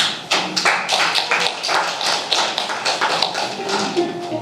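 Congregation clapping: a dense, uneven run of sharp claps, about five a second.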